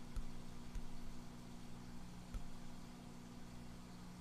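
Faint room tone with a steady low hum, and a few soft taps as a stylus writes on a tablet.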